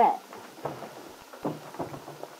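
Crackling surface noise and hiss of an old radio transcription recording, with a few faint, irregular rustles and soft knocks.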